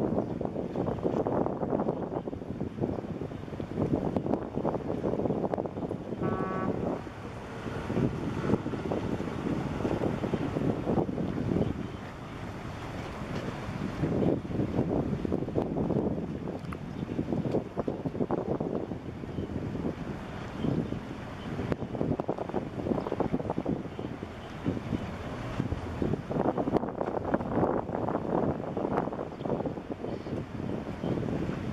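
Wind buffeting the microphone in uneven gusts, with a short high tone about six seconds in.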